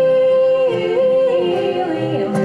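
Live acoustic music: two acoustic guitars and a violin, with one long held high melody note that wavers briefly under a second in and then slides down near the end.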